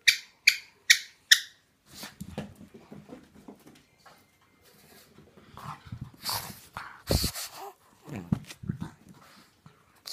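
Pug giving four short, high-pitched whimpering cries in quick succession, then softer scuffling and snuffling as it moves about with a tennis ball in its mouth. Two louder rough snorts come a little past halfway.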